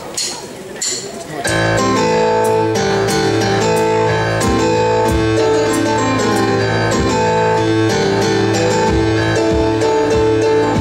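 Live rock band starting a song about a second and a half in, after a few sharp clicks: guitars, keyboards, bass and drums playing steady held chords.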